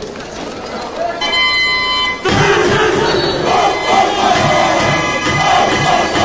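A high school cheering squad in the stands chanting loudly in unison, with low regular beats underneath, beginning a little over two seconds in. Before it comes about a second of general crowd noise and a steady pitched tone lasting about a second.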